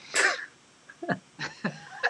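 A man's stifled laughter: one loud, cough-like burst of breath, then several short laughing breaths.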